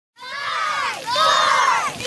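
A group of children shouting and cheering together, many high voices at once, in two swells of about a second each.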